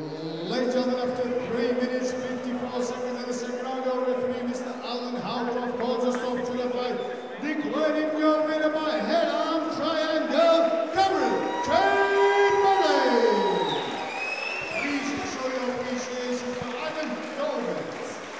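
Ring announcer's voice announcing the fight result, drawing out long held syllables that step up and down in pitch, with a long falling glide about two-thirds of the way through.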